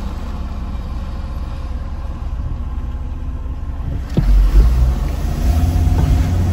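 Car road and engine noise on a mountain road, a steady low rumble. About four seconds in it jumps to a louder, heavier rumble as an oncoming SUV passes close by.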